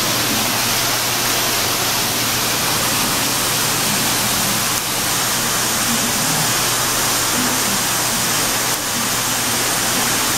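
Steady, loud rushing noise with a low hum underneath.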